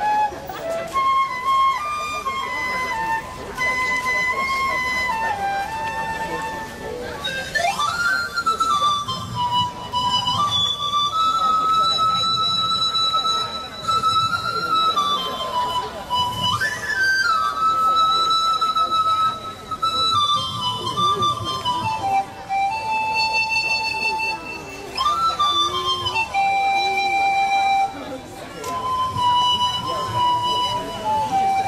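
Solo wind-instrument melody on a silver concert flute and then a pan flute: slow, long held notes with a quick upward swoop about every eight or nine seconds.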